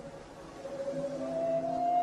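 Background music of long, held notes with no beat. One note fades out at the start, and a new chord swells in about a second in, growing louder.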